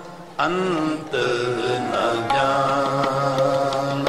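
Sikh kirtan: a male voice singing the shabad in a devotional chant over a harmonium. There is a brief break at the very start. Singing resumes about half a second in, and long notes are held in the second half.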